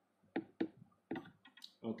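Felt-tip whiteboard marker writing on notebook paper: a few short, separate scratchy strokes and clicks as letters are drawn, with a spoken word right at the end.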